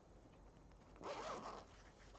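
Zipper of a headphone carrying case being pulled open in one short zip about a second in, over faint handling of the case.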